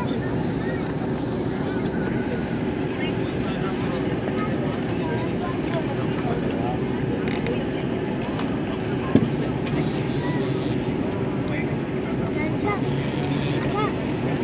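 Steady cabin noise of a jet airliner in cruise heard from a window seat beside the wing-mounted turbofan engine, an even rush with a low steady hum. Faint passenger chatter runs underneath, and a single sharp click sounds about nine seconds in.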